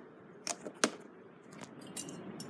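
A few sharp clicks and knocks, the loudest just under a second in, with another near the end.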